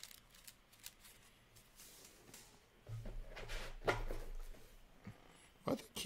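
Trading cards being handled: faint light flicks and clicks, then a louder stretch of rustling about three seconds in.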